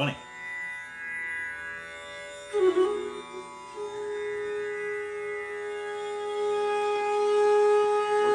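Bansuri (Indian bamboo flute) playing a slow phrase over a steady drone: a note slides in about two and a half seconds in, then the flute settles on one long held note that grows louder toward the end.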